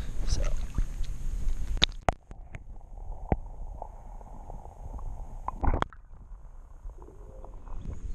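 Wind and handling noise on an action camera's microphone, then the camera goes under the pond water about two seconds in and the sound turns muffled and dull, with a few sharp clicks and knocks. A louder sloshing burst of water noise comes a little after halfway.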